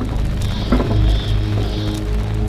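Film-trailer score: a deep, steady drone with a high held tone entering about half a second in.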